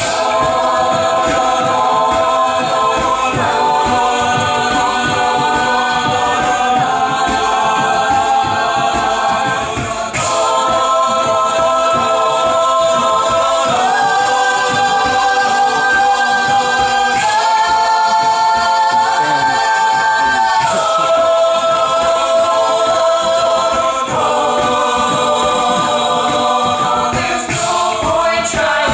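Mixed-voice a cappella group singing sustained block chords that change every three to four seconds, over a steady low rhythmic pulse.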